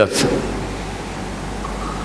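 Steady background hiss with a faint low hum in a pause between spoken sentences, just after a man's voice ends a word.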